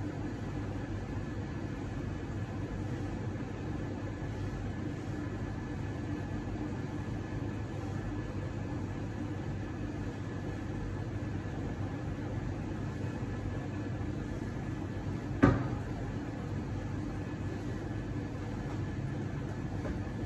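Steady low hum of café machinery with a faint high whine above it, and one sharp knock about fifteen seconds in.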